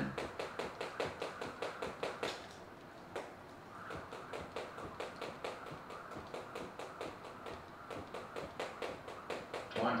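Speed jump rope doing double-unders: the rope slaps and the skipper lands in a fast, even rhythm of about four strikes a second. The strikes thin out for about a second, from two and a half seconds in, then pick up again.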